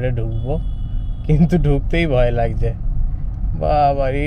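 A person speaking inside a moving car, over the steady low rumble of the engine and tyres heard from within the cabin.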